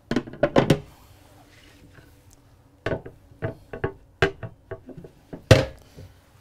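A series of hard knocks and clacks, some with a brief ring, as a solid-surface sink cover is handled and set down on the kitchen sink and countertop. A quick group of knocks comes at the start, then a pause, then a longer run of knocks from about three seconds in, the loudest near the end.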